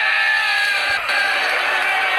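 A group of men cheering and whooping together, many voices overlapping, with a brief dip about a second in, played back through a computer's speakers.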